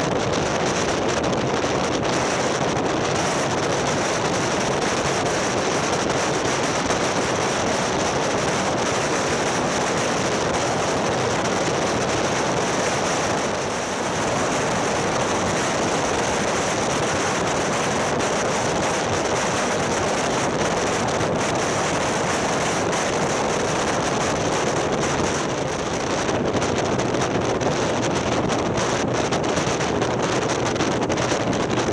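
Steady rush of wind buffeting the microphone of a motorcycle-mounted camera at road speed, with the motorcycle's running noise beneath it, easing briefly twice.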